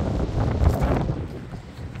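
Wind buffeting the microphone: a low, rumbling roar that eases off near the end.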